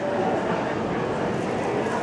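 Background chatter of a crowd of people in a hall: a steady hubbub of distant voices, with no one speaking close by.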